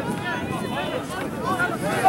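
Overlapping chatter of many people's voices talking at once, with no clear words.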